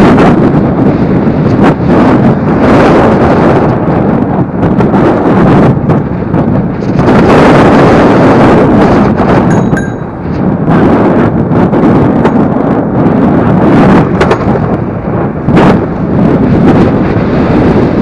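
Heavy wind buffeting on the microphone of a camera riding on a moving e-scooter, with a few sharp knocks and a brief lull about ten seconds in.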